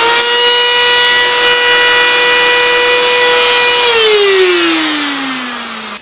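Electric die grinder with a carbide rotary burr running at full speed with a steady high whine, then switched off about four seconds in, its pitch falling as it spins down. The repairman says running a burr bent by kickback like this brings loud noise and vibration that wreck the grinder's bearings.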